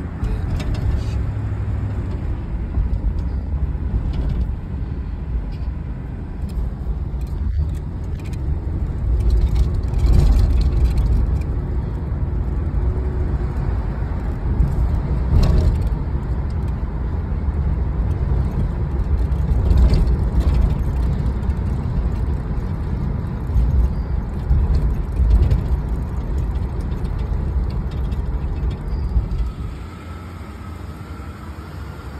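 Box Chevy Caprice driving, its engine and tyre rumble heard through an open window, with irregular gusts of wind noise on the microphone.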